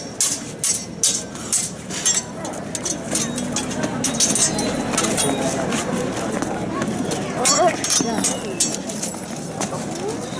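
Steel swords clashing in a choreographed stage fight: a run of sharp metallic clangs, quickest in the first couple of seconds, over crowd chatter, with a man's voice shouting briefly near the end.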